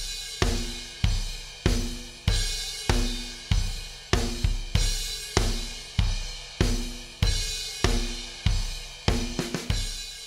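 EZDrummer 2 virtual drum kit playing back a MIDI drum groove: kick and snare hits a little more than every half second under a constant wash of hi-hat and cymbals. It ends with a short flurry of quicker hits near the end, like a fill.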